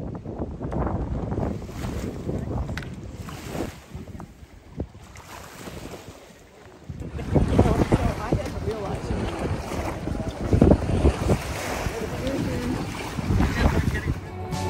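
Wind buffeting the microphone over small waves lapping in shallow water, louder from about halfway through.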